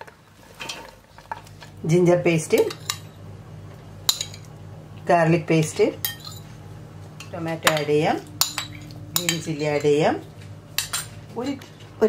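A metal spoon scraping and clinking against a steel plate and stainless steel pot as sliced onions and ginger-garlic paste are scraped in. There are several squeaky scrapes and a few sharp clinks.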